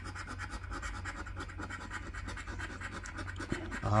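A coin scraping the scratch-off coating from a paper lottery ticket in quick, even strokes.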